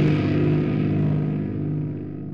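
The final chord of a heavy nu-metal song ringing out: a sustained, distorted electric-guitar chord held steady with no new strikes, fading gradually as its upper overtones die away.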